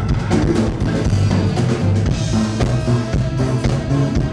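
A live band playing an instrumental passage with no vocals, the drum kit and bass guitar to the fore over the rest of the band.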